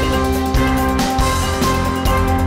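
News programme theme music with sustained chords over a steady beat.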